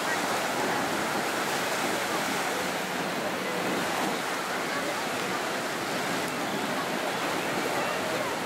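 Sea surf washing and breaking in the shallows, a steady rushing noise, with people's voices faint beneath it.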